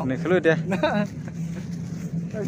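A man talking for about a second, over a steady low hum that carries on after he stops.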